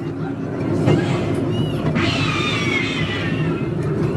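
Ride train running along its track with a steady low rumble; about two seconds in, a high cry rises over it and falls slowly in pitch for over a second.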